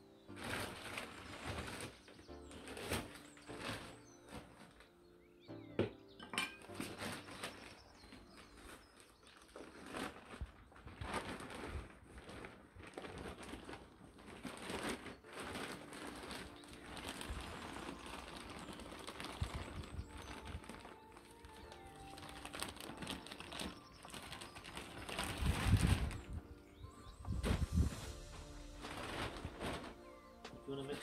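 Background music under the crinkling and rustling of a plastic compost bag, with compost tipped out into a plastic tub; the heaviest tipping, with dull low thuds, comes near the end.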